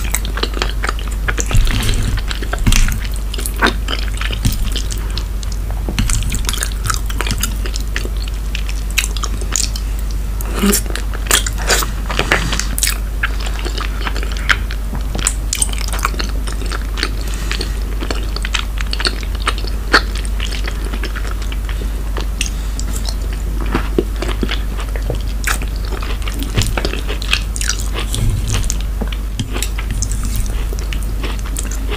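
Close-miked chewing and wet mouth sounds of eating creamy cheese gratin and cherry tomato, with many sharp clicks and smacks throughout. A steady low hum runs underneath.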